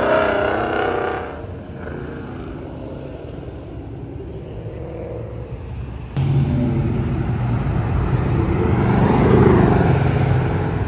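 Car engines running as cars drive past. The first is loud and fades within about a second and a half, leaving a lower rumble. About six seconds in, a louder engine sound starts abruptly and builds toward the end.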